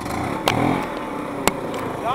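Snowmobile engine idling with a fast pulse, its speed rising briefly about half a second in. Two sharp clicks come about a second apart.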